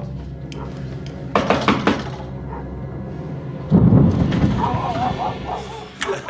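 An apartment door being unlocked and opened: a few clicks and a quick rattle of the lock, then a heavy low thud about four seconds in.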